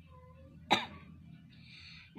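A single short cough about two-thirds of a second in, against a quiet room background.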